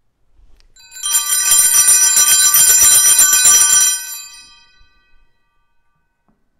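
A set of small altar bells shaken rapidly for about three seconds, with many bright high tones, then ringing out quickly. It is the bell rung to signal the start of Mass.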